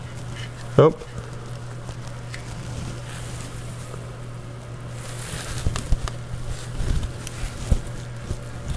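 Small clicks and taps of a 2 mm hex key on a folding multi-tool working the clamp bolt of a bicycle dropper-post lever on the handlebar, with a few low knocks of handling in the last few seconds, over a steady low hum.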